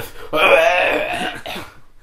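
A person's rasping, throaty vocal sound lasting about a second and fading away.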